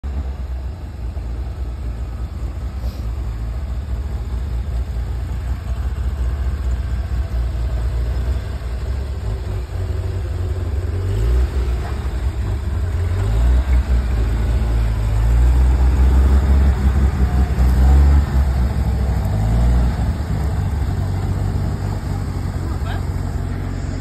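A Jeep CJ's engine running at crawling speed over rock ledges, revving up several times in the middle as it climbs. The revs are loudest about two-thirds of the way through, then ease back.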